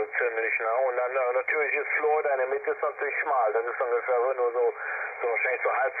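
Single-sideband voice received by an FX-4CR SDR HF transceiver on the 20-meter amateur band and played through its speaker: continuous talk from a distant station, sounding thin and narrow, with no deep lows or crisp highs.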